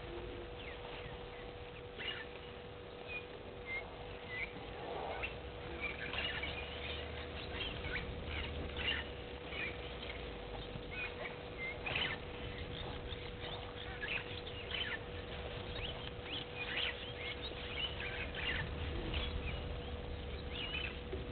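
Small birds chirping and calling in short, scattered notes over a steady faint hum.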